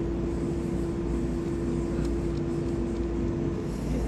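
A steady machine hum: one held tone over a low rumble, unchanging throughout.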